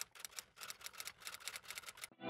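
Faint, rapid, irregular keystroke clicks of a typing sound effect, about ten a second.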